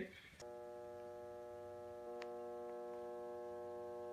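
A steady electronic tone made of several pitches held together, like a sustained synthesizer chord, starting about half a second in and growing slightly louder about halfway through.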